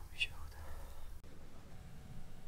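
A person's faint whispering over a low, steady hum. A short hiss comes early on, and the upper hiss drops away abruptly just past a second in.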